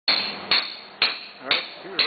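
A caulking mallet striking a caulking iron, driving oakum into the seams of a wooden boat's hull: sharp ringing knocks at a steady pace of about two a second.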